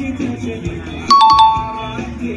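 Background music with a beat, and about a second in a bright two-note chime, a ding-dong of a few quick strikes, higher note then lower, ringing on to the end.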